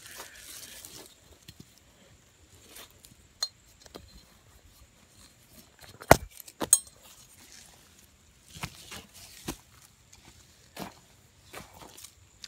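Scattered clinks and knocks of metal tree-rigging hardware handled among ropes and a sling, with two sharp clinks a little over halfway through.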